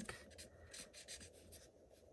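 Faint strokes of an alcohol-based blending marker coloring on cardstock.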